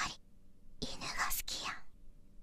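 A person whispering a short phrase, mostly in the second half.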